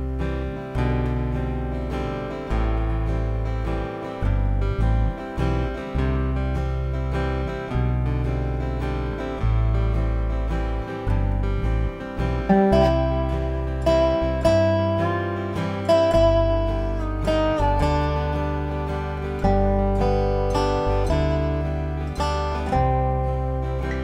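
Solo dobro (wooden-bodied resonator guitar) played lap-style with a steel bar and finger picks. A slow melody slides between notes over ringing low strings, with a fresh pick attack every second or so.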